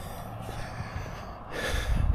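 A person breathing out hard close to the microphone, a noisy swell about a second and a half in, over a steady low outdoor rumble.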